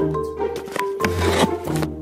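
Background music: held bass notes under short melodic notes.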